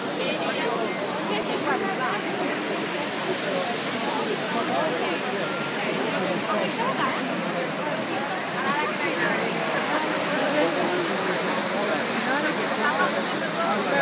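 Trevi Fountain's cascades pouring into the basin with a constant rush of falling water, mixed with the chatter of a crowd of many voices.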